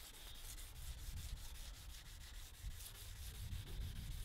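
800-grit sandpaper on a flexible foam pad rubbing across a plastic headlight lens, a faint continuous scratchy scrape as the hand strokes along the lens in one direction, sanding off the yellowed, misty surface.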